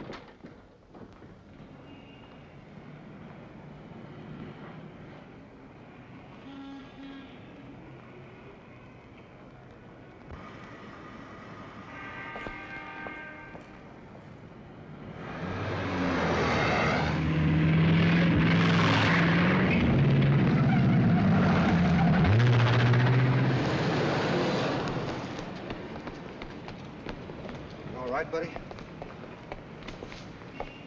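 A car speeds past along the street. It gets loud about halfway in, stays loud for some ten seconds with low steady tones that shift pitch in steps, then fades.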